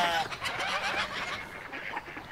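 Farm animal sounds: a long bleat ends just after the start, followed by fainter, irregular sounds of poultry.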